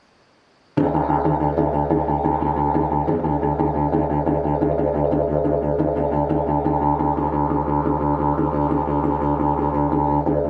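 Carbon-fibre and kevlar double-slide didgeridoo played as a steady low drone, its overtones pulsing in a quick rhythm. It starts abruptly about a second in, after a brief silence.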